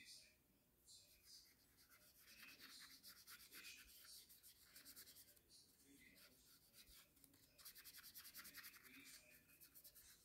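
Faint rubbing of a glitter brush pen's tip on card, stroked quickly along the card's edges in two runs, one early and one later.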